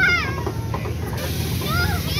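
Young children squealing on a spinning teacup ride: a high squeal falling in pitch at the start and a shorter rising-and-falling squeal near the end, over a steady low rumble.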